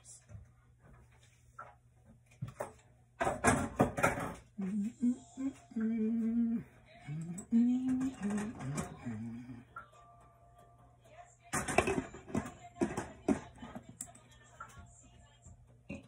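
A glass pan lid clattering as it is lifted off a simmering pan about three seconds in, and clattering again as it is set back on near the end. In between, a person hums a few wavering notes.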